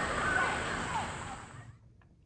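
Steady outdoor background hiss, fading out about a second and a half in to near silence.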